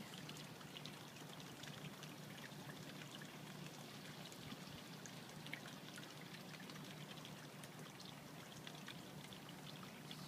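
Faint, steady trickle of running water, with many small scattered drips and splashes.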